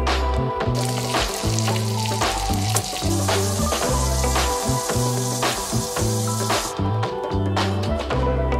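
Background music with a repeating bass line, over a steady hiss from about a second in until near the end: lamb chops sizzling as they fry in a hot pan.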